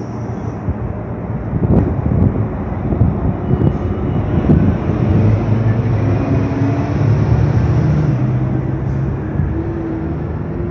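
Steady low rumble of street traffic, with a vehicle engine hum building in the middle and fading near the end.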